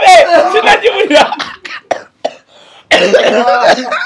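A man laughing hard in loud, coughing bouts: one long burst at the start, a lull with short gasps, and another loud burst about three seconds in.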